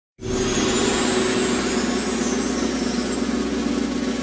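A steady, dense electronic drone: an even hiss with a low held tone underneath, starting abruptly just after the beginning.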